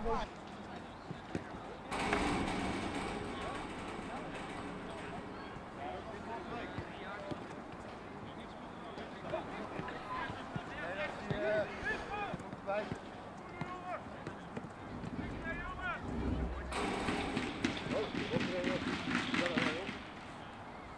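Open-air ambience at a football ground: scattered, indistinct voices of players and spectators talking and calling, with no clear words. The background noise steps up about two seconds in and again near the end.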